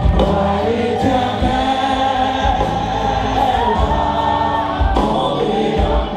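Live gospel worship music: a woman leads the singing through a microphone and the congregation sings along as a group, over a band with sustained bass notes and a steady beat.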